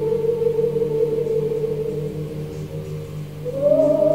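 Slow, sustained choral singing: voices hold one long note that fades slightly, then step up to a higher held note near the end.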